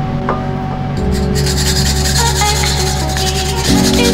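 Daikon radish being grated coarsely on a wooden-toothed oni-oroshi grater: rapid repeated scraping strokes that start about a second in, over background music.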